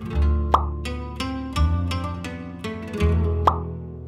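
Background music: plucked string notes over deep bass notes, with a sharp accent about half a second in and another near the end.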